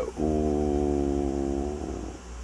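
A man's drawn-out hesitation vowel, a held "ooo" at one steady pitch lasting about a second and a half before it trails off. A low electrical hum sits underneath.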